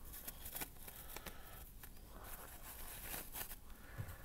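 Faint rustling and crinkling of a disposable paper surgical mask being handled and pulled on over the face, with soft scattered clicks of handling.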